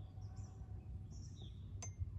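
Faint, scattered bird chirps over a low steady background hum, with a single short click near the end.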